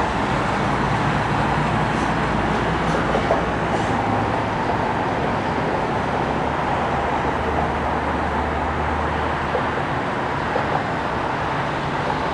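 Steady traffic noise from a busy multi-lane expressway heard from a high balcony: an even wash of tyre and engine sound. A deeper low rumble swells for a couple of seconds about two-thirds of the way through.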